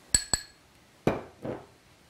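Metal spoon clinking twice, sharply, against a glass bowl while scooping cornstarch, followed about a second later by two duller knocks of the spoon on glass.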